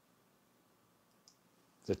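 Near silence in a pause between spoken phrases, broken once by a faint, very short click a little over a second in; a man's voice starts right at the end.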